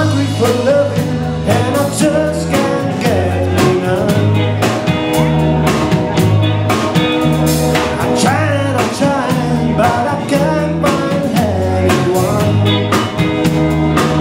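Live blues band playing: electric guitars, drum kit and electric organ over a steady, repeating bass line, with a male voice singing at times.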